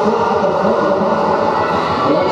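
Quad roller skate wheels rolling on a wooden sports-hall floor, a steady rumble, mixed with the noise of the crowd in the hall.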